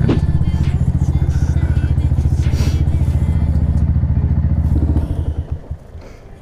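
Yamaha MT-125's single-cylinder four-stroke engine running at low revs through an Akrapovic titanium exhaust, with a steady, even pulse. It drops away abruptly about five seconds in.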